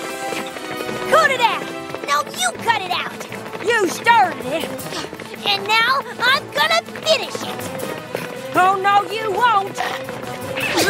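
Cartoon character voices in short spoken lines and brief voiced outbursts over steady background music.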